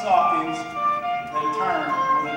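A school concert band playing, French horns among the instruments, several parts holding overlapping notes that shift from one pitch to the next.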